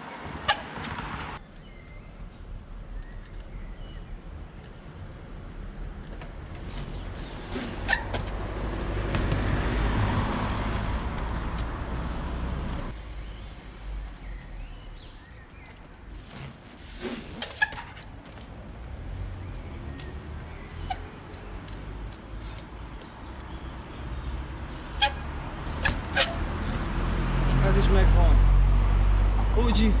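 Road traffic passing on a street. One vehicle swells and fades about eight to thirteen seconds in, and there are a few sharp knocks scattered through. A low rumble builds near the end.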